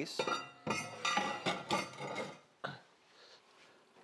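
Metal tongs clinking and rattling against an enamelled cast-iron pot for about two seconds, then one sharp click a little later.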